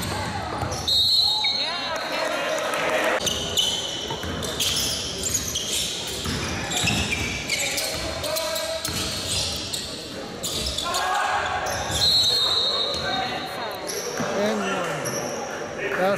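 Basketball game sounds in a gym: a ball bouncing on the hardwood floor with scattered voices, echoing in the hall, and brief high squeaks about a second in and about twelve seconds in.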